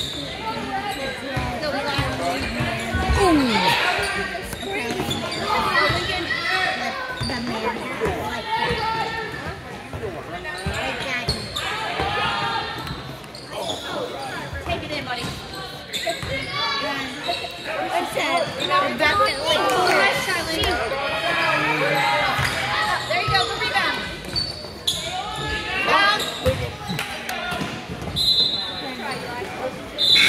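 A basketball being dribbled and bounced on a gym court during a game, mixed with players' and spectators' voices in the hall.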